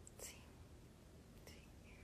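Near silence: faint room tone with a low hum, broken by two faint brief hisses, about a quarter second in and about a second and a half in.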